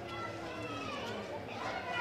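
Background chatter of children and adults, several faint voices talking over one another.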